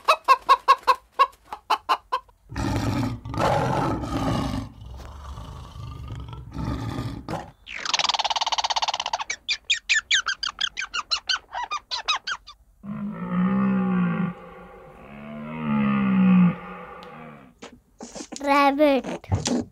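A run of animal sounds: hens clucking in quick pulses at the start, then harsh noisy calls, then a fast chattering from a squirrel about halfway, and two long, low calls near the end.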